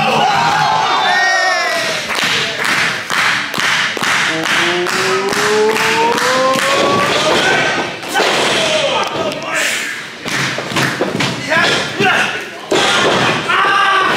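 Wrestling crowd pounding out a fast, even rhythm of thuds, about three to four a second, under a long shout rising in pitch, as a top-rope move builds. It gives way to a body landing on the ring canvas and further scattered thuds and shouts.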